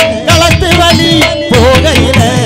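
Tamil folk band playing: sharp drum strokes from tabla and thavil under a wavering melody line, loud and continuous.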